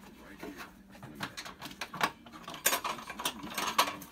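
Plastic windshield washer reservoir being handled and test-fitted in an engine bay, a run of sharp clicks and knocks as it bumps and scrapes against parts.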